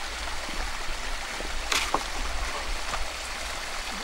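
Steady rush of a flowing stream, with a brief sharp sound a little under two seconds in.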